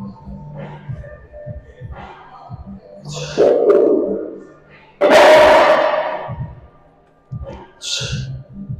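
Loud, strained breaths and a grunt from a lifter pushing a lying leg curl set to failure: one about three seconds in, and a louder one that starts sharply about five seconds in and fades over a second. Gym music with a thudding bass beat plays underneath.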